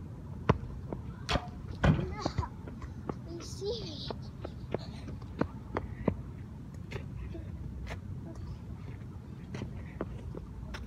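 A soccer ball being kicked and bouncing: a run of irregular sharp knocks, loudest about half a second and two seconds in, over a steady low wind rumble.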